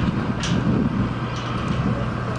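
A steady low mechanical rumble with a constant droning hum underneath, and a few faint ticks over it.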